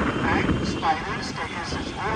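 Speech over a steady rumble of wind and traffic noise from an open-top bus moving through city streets.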